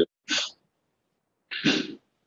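Two short breathy bursts of a person's voice over a video-call line, a faint hissy one just after the start and a fuller one about a second later; the line is dead silent between them.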